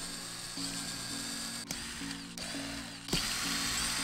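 Cordless drill/driver running in short bursts, driving screws into a plywood mold box, with a sharp click about halfway through and another near the end; background music plays underneath.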